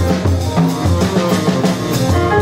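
Jazz quartet playing live: tenor saxophone over piano, double bass and drum kit, with a steady line of low bass notes under the horn and regular cymbal strokes.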